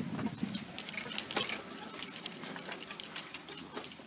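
Footsteps crunching over crusted, patchy snow and dry grass, with an irregular crackle of small clicks.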